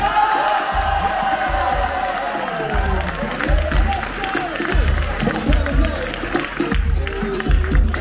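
Battle music with a heavy, pulsing bass beat, with a crowd cheering and exclaiming over the first few seconds.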